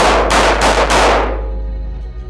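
A rapid string of 9mm pistol shots, several within the first second, each echoing in an indoor range, with the reverberation dying away about a second and a half in.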